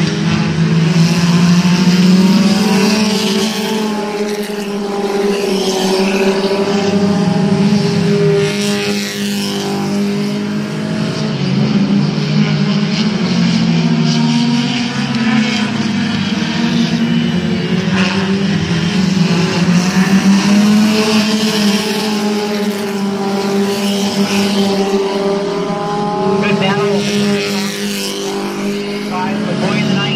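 A pack of compact-class race cars running laps on a short oval, their engines' pitch rising and falling in long swells as they accelerate down the straights and ease off for the turns.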